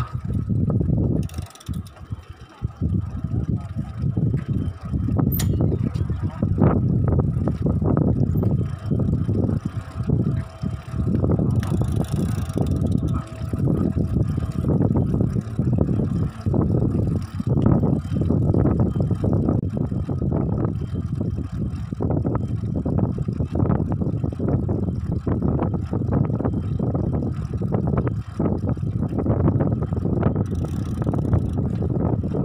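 Wind buffeting the microphone of a moving road bike, with tyre rumble on the asphalt, starting up about two seconds in as the bike gets under way.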